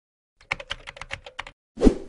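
Logo-intro sound effect: a quick run of about a dozen typing-like clicks over one second, then a short, louder whoosh with a low thud near the end.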